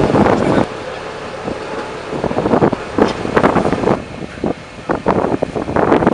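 Vehicle engine idling steadily, with wind rumbling on the microphone and voices talking in short bursts from about two seconds in.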